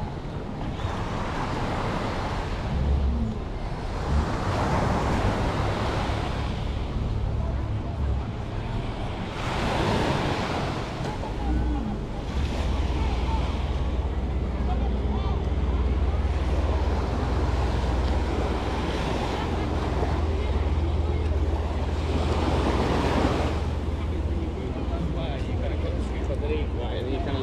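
Small waves washing up on a sandy shore, the surf swelling and fading every few seconds, with wind buffeting the microphone.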